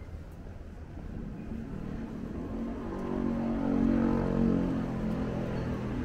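A motor vehicle's engine passing close by: a low hum that swells to its loudest about four seconds in and then fades, over a steady low rumble.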